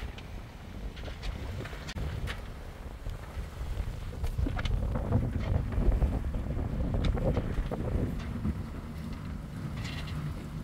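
Wind rumbling over the microphone on the deck of a catamaran under way, swelling in the middle and easing near the end, with a few faint knocks.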